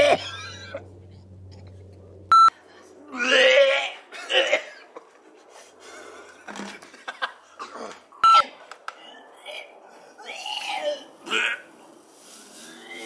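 A person's voice making short wordless vocal sounds in several bursts, cut by two brief high-pitched electronic beeps, one about two and a half seconds in and one about eight seconds in.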